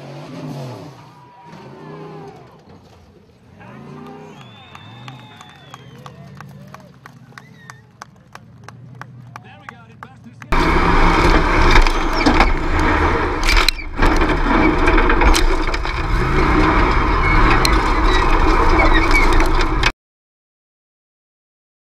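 Quieter stretch of voices and low, wavering tones, then about halfway a sudden jump to a loud off-road race buggy engine held at high revs as its paddle tyres spin in loose dirt.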